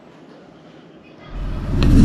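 Faint room tone, then about a second in a car's low engine and cabin rumble rises quickly and holds.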